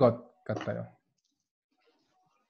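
A man's voice briefly speaking a Korean phrase, heard over a video call. It cuts off abruptly about a second in, and near silence follows.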